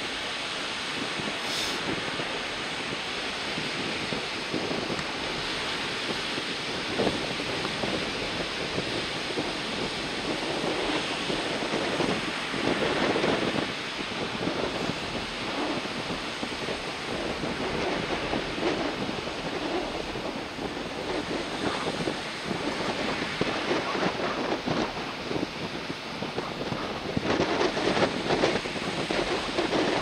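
Waves breaking in rough surf with strong wind buffeting the microphone: a steady rushing roar that surges louder about halfway through and again near the end.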